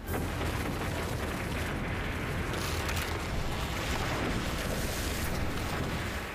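Cartoon sound effect of a cave-in: a sudden, heavy rumbling of collapsing rock that starts at once and keeps going for about six seconds.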